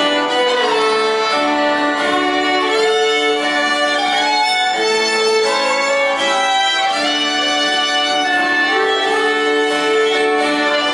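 Three fiddles playing a slow melody in long held notes, backed by two acoustic guitars.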